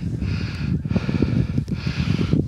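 Wind buffeting the microphone: a low, uneven rumble, with a rustling hiss coming and going twice.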